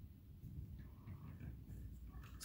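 Quiet room tone: a faint, uneven low rumble with no distinct event.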